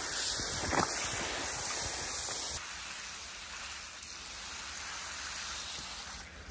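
Water jetting from a pistol-grip garden hose nozzle onto rubber boots, rinsing off mud, a steady hiss of spray. About two and a half seconds in it drops suddenly to a softer spray.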